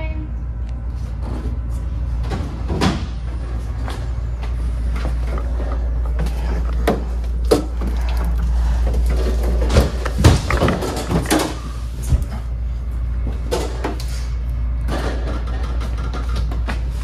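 Heavy breathing close to the microphone, with scattered knocks and clatter of bottles and a refrigerator door being handled, over a steady low hum.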